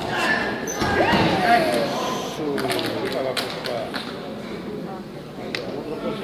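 Shouted voices echoing in a large sports hall, with one loud rising-and-falling call about a second in, and several short knocks and thuds of judoka on the tatami mats during a throw.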